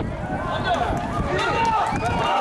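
Voices calling out and talking in an open-air football stadium, over a steady low rumble.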